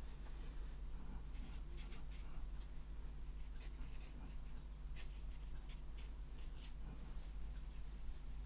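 Hake brush stroking across thin watercolour paper: a run of short, brief swishes over a steady low hum.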